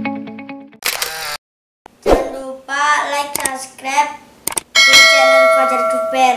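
Edited intro sound track: a countdown music cue fades out, followed by a short rush of noise and a brief gap. A child's voice then talks, and near the end a bright, chime-like tone holds for about a second.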